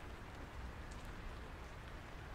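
Faint, steady background hiss of outdoor ambience, with no distinct sound events.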